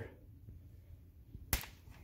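Near quiet room tone broken by a single sharp click about one and a half seconds in.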